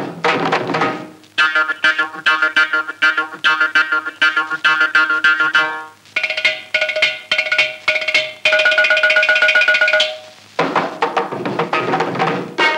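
Carnatic percussion solo: a mridangam plays rapid, ringing tuned strokes. About halfway through, a ghatam (clay pot drum) takes over with its own pitched strokes, rising to a very fast unbroken run. Near the end the mridangam returns after a brief pause.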